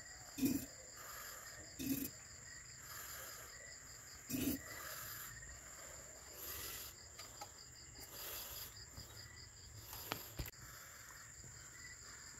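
Crickets chirping steadily in a fast, even high-pitched trill. A few short soft knocks come in the first few seconds.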